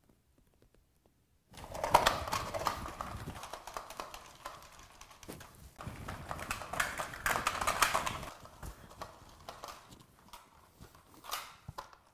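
Plastic Buzz Lightyear action figure being handled and waved about: a quick run of plastic clattering and rustling that starts about a second and a half in and comes loudest in two spells. The figure's arm, reattached with Sugru, is being tested.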